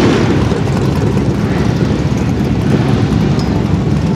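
Cammed 2006 Corvette Z06's 7.0-litre LS7 V8 with long-tube headers idling with an uneven, choppy lope while the car creeps forward.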